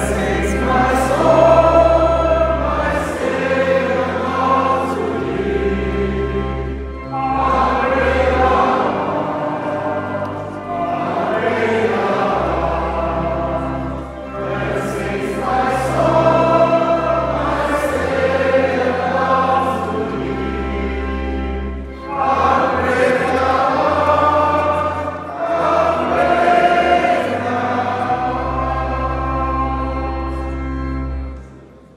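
Church congregation singing a hymn together in phrases of a few seconds each, with short breaths between them, over steady low bass notes.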